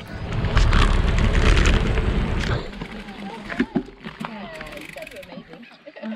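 Wind buffeting the microphone of a handlebar-mounted camera on a moving bicycle on a dirt road, a loud rumble lasting about two seconds. It then drops away, leaving faint voices talking and a few light clicks.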